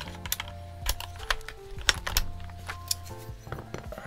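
A series of sharp, scattered plastic clicks as a keycap is worked off its switch on a mechanical keyboard, over background music with long held notes.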